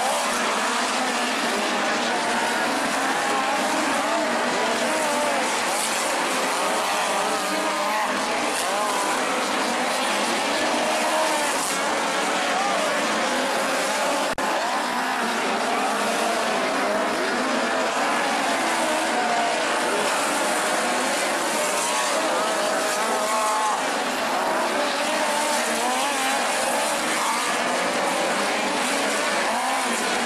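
A field of midget race cars running laps on a dirt oval. Their four-cylinder engines rev up and down together without a break, several pitches weaving over each other.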